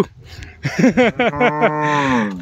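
Cattle mooing: a few short calls about half a second in, then one long, low moo that falls in pitch as it ends.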